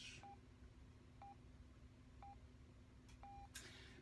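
Radio time signal: four short, faint beeps of the same pitch about a second apart, the last one held longer, marking the top of the hour.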